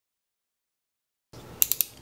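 Dead silence for over a second, then a quick run of three or four sharp clicks near the end: a snap-off utility knife's blade being slid out.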